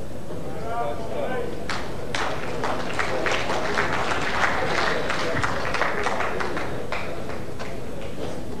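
A voice calls out briefly, then an audience applauds for several seconds, dying away near the end.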